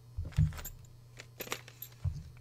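Keys or small metal parts jangling and clinking as they are handled, with a heavier knock about half a second in and a few sharp clicks after.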